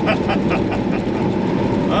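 A man laughing in quick bursts during the first second or so. Under it the steady drone of a Peterbilt 389 semi truck's engine and road noise, heard from inside the cab.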